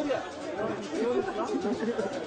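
Several people talking at once: background chatter of a standing crowd of guests.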